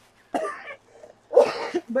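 A woman coughing: a short cough about a third of a second in, then a louder one about a second and a half in.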